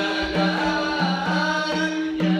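Men singing a devotional chant together to the steady beat of a hand-held frame drum, with low drum strokes a few times a second.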